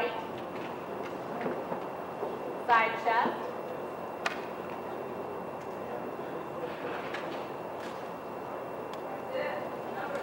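Steady hall ambience with a low hiss from the stage recording. A single voice calls out briefly about three seconds in, followed by a sharp click a second later.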